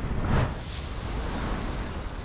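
Wind blowing outdoors: a louder gust swells about half a second in, then a steady rush.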